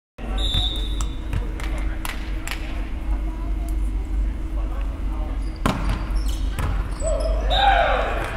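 A volleyball bounced several times on a hardwood gym floor. Two sharper hits follow, about five and a half and six and a half seconds in, with voices rising near the end.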